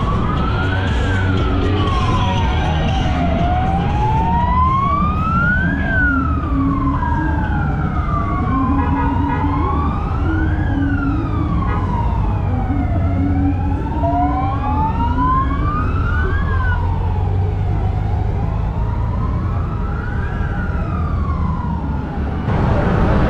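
Police siren wailing, rising and falling slowly about every five seconds, over the steady low rumble of a column of Honda Gold Wing motorcycle engines.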